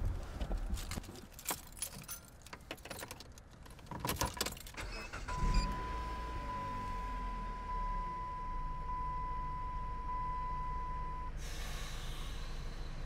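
Keys jangling and small clicks and rattles inside a car, then the engine starts about five seconds in and runs at a steady low idle. A steady high tone sounds for about six seconds over the idle, and a brief hiss comes near the end.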